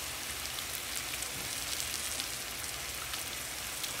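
Tilapia fillets and diced bell peppers sizzling in a frying pan: a steady hiss with faint scattered crackles.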